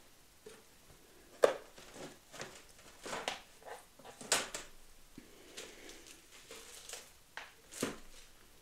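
Scattered light knocks, clicks and rustling of someone rummaging through craft supplies while searching for something, with the sharpest clicks about a second and a half in, near the middle, and just before the end.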